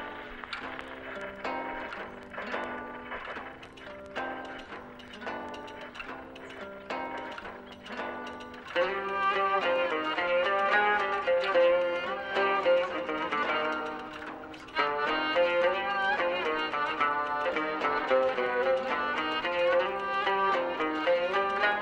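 Instrumental music from a gramophone record: violin over plucked strings, thin-sounding at first, then fuller and louder about nine seconds in.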